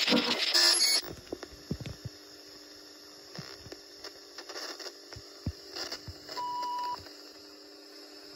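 Sound-designed videotape playback effect. A loud rush of noise cuts off about a second in, leaving steady tape hiss and hum with scattered clicks and thumps. A single steady beep lasts about half a second, some six and a half seconds in.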